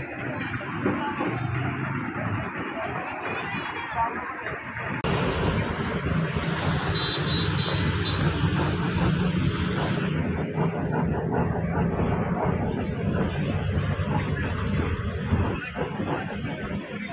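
Road traffic noise, then, from about five seconds in, a bus engine running steadily with a low rumble, heard from inside the bus.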